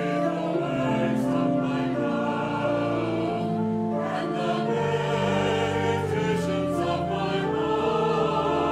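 Mixed church choir of men and women singing together in sustained chords.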